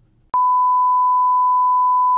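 Television test-card tone: a single loud, unwavering beep at one steady pitch, starting about a third of a second in after near silence.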